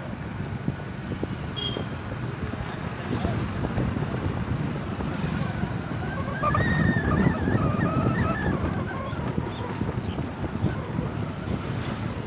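Wind buffeting the microphone and road rumble from riding an electric scooter, with a vehicle horn honking in a wavering tone from about six to nine seconds in.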